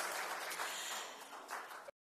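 Audience applauding, fading away gradually and then cutting off abruptly near the end.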